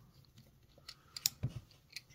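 A few light, sharp clicks and one soft knock from handling a small diecast model car and a precision screwdriver as the last base screw is finished and the car is turned over.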